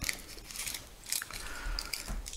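Baking-paper wrapper crinkling and rustling in short, scattered bursts as it is pulled from a mesh pocket and unfolded by hand.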